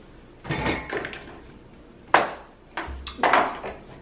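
Hand rummaging through a paper grocery bag: paper crinkling and packed groceries knocking against each other in a few irregular bursts, with one sharp knock about halfway.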